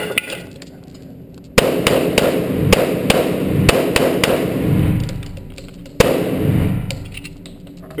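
A string of 1911 pistol shots (an STI Spartan) fired fast at IPSC targets, starting about a second and a half in, with the last shot coming after a short pause. Each shot echoes loudly off the walls of an indoor range.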